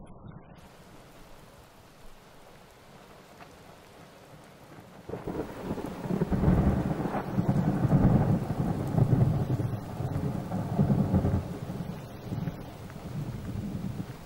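A thunderstorm: faint steady noise, then about five seconds in a long roll of thunder with rain that swells and eases several times.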